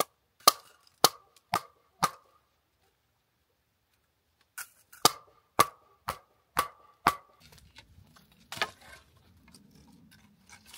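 A hatchet chopping into dead branches: four sharp blows about half a second apart, a pause of two seconds, then six more at the same pace. Faint crackling of dry brush follows near the end.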